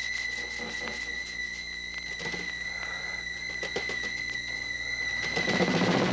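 A steady high-pitched whine from the old videotape recording, under faint rustles and small knocks of movement; a louder swell of sound comes near the end.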